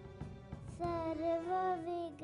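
A young girl singing into a microphone, holding long notes with a slight waver; her voice fades briefly at the start and comes back strongly just under a second in.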